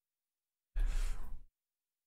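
A man's single sigh, one short breath out a little under a second in, lasting under a second.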